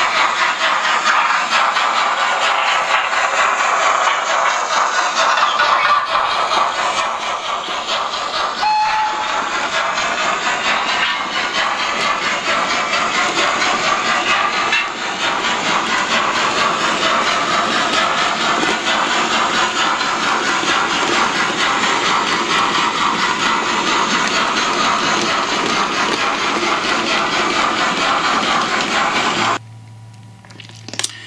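Steam-train running sound as a goods train passes: a continuous loud hiss and rumble, with one brief tone about nine seconds in. It cuts off abruptly just before the end.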